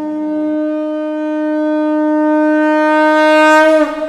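A conch shell blown in one long, steady note that grows louder and then dips in pitch as it ends, near the end. A lower musical layer beneath it stops about half a second in.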